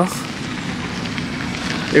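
Steady outdoor noise with a crackly texture and no clear single source, heard while walking along a park path.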